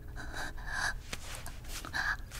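A woman's short, breathy huffs of breath, several in quick succession, with a few small mouth clicks.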